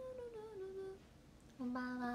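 A young woman humming a short wavering phrase that falls in pitch, then, after a brief pause, a lower, louder held note near the end.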